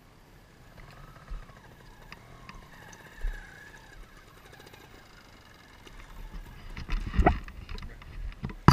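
Low rumbles of wind on the microphone and a few knocks from the camera being handled, busier near the end with the loudest knock about seven seconds in.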